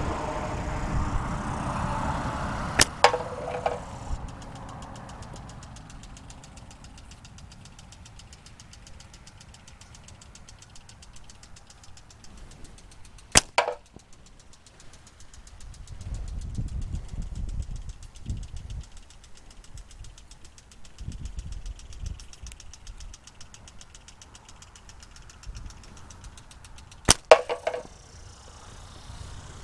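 Three slingshot shots about ten seconds apart, each a sharp snap of the released bands; the first and last are followed a fraction of a second later by a second crack with a short ring as the shot strikes the target. A passing vehicle rumbles under the first few seconds.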